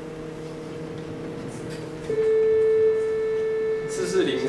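Computer-generated steady sine tone near 440 Hz (concert A) from a Pure Data oscillator patch. Fainter steady tones at several pitches sound at first, then about two seconds in a louder single tone takes over.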